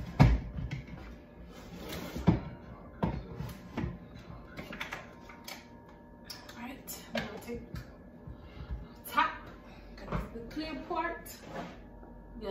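Knocks, clicks and clatter of a plastic blender jar being handled and fitted onto its motor base on a countertop, the sharpest knock just at the start. The blender motor is not running.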